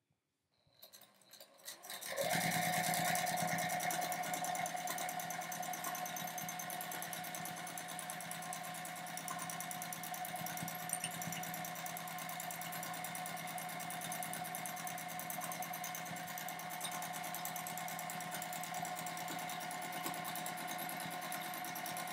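Juki sewing machine stitching at a steady speed through the layers of a quilt sandwich during free-motion quilting, starting about two seconds in.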